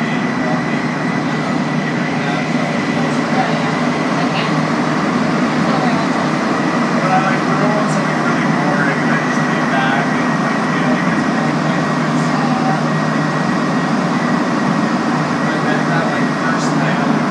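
Montreal Metro Azur rubber-tyred train running, heard from inside the car: a steady loud rumble with a constant high whine throughout, and faint passenger voices underneath.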